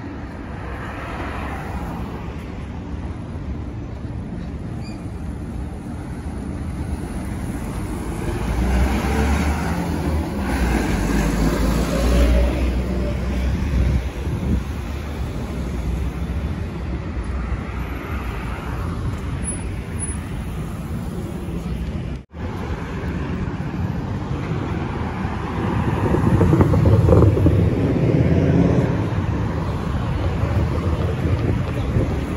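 City road traffic: cars driving past, with louder passes as vehicles go by close about nine seconds in and again near the end.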